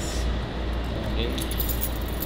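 A bunch of keys jangling in a hand, in short bright jingles in the second half, over a steady low hum.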